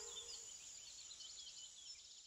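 Faint birdsong: quick, repeated chirps and short twittering phrases, with the last of the music fading out in the first half second.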